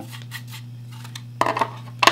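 Light metallic clicks from a bare 2.5-inch hard drive being handled, with a quick clatter of several sharp clicks about one and a half seconds in as the drive is set down on the desk.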